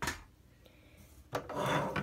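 Plastic 1/18-scale diecast NASCAR car body being slid and turned by hand across a tabletop, a scraping rub that starts a little over a second in.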